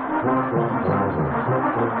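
School wind band of saxophones, clarinets and brass playing a piece, with low notes changing every fraction of a second under the higher parts. The sound is dull, with no treble, as from an old tape recording.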